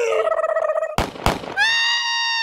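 A laugh, then two sharp bangs about a third of a second apart, followed by a long held high-pitched note that begins about a second and a half in.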